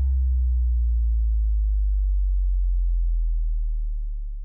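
A deep sub-bass note from a DJ funky remix ringing on after the track's final hit: a steady low hum, with the last higher tones dying away in the first second. It starts to fade near the end.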